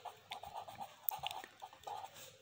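Pen writing on paper: faint, broken scratching of short strokes as letters are formed, with a few small ticks.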